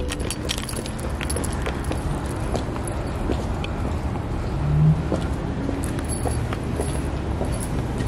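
Outdoor ambience with a steady low rumble, scattered light clicks and rustles from a handheld camera carried on foot, and a brief low hum about five seconds in.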